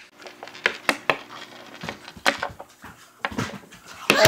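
Scattered light clicks and knocks of small plastic toy pieces being handled and set down on a tabletop.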